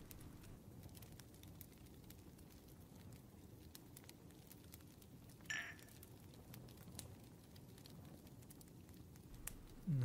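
Faint fireplace crackling, scattered small pops over a low, steady rain-like patter. One short, brighter sound comes about halfway through.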